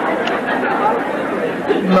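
Audience chattering, many voices talking over one another.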